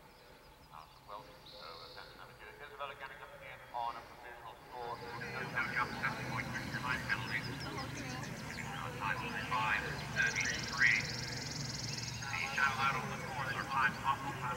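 Indistinct talking of people close to the microphone, none of it clear enough to make out words. It is sparse at first and becomes louder and more continuous about five seconds in.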